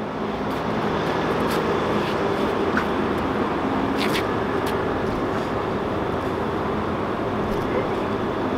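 A steady mechanical running noise with a low hum, like an engine or machine running nearby, with a few faint clicks.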